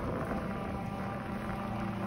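Wind rushing over the microphone and bicycle tyres rolling on wet pavement while riding, a steady noisy rush. Shortly after the start, a steady low drone of background music comes in underneath.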